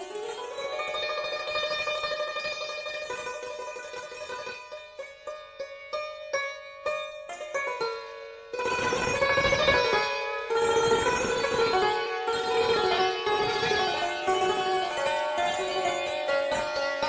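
Persian classical instrumental music in dastgah Homayun. It opens on a long held note, then moves into a passage of separate plucked or struck string notes. The ensemble comes in louder about eight and a half seconds in.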